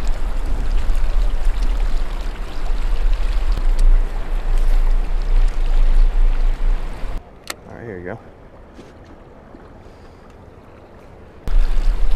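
Water rushing past a rowboat's hull, with wind buffeting the boat-mounted camera's microphone: a steady, noisy rush over a heavy low rumble. It cuts off abruptly about seven seconds in, leaving a much quieter background.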